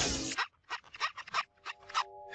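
Cartoon sound effects: a hissing whoosh that cuts off about half a second in, then a quick run of about eight short, sharp noises. A held musical chord comes in near the end.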